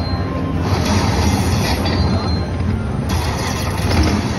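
Loud, steady din of a busy casino floor, heavy in the low end, while a slot machine's reels spin through one paid game.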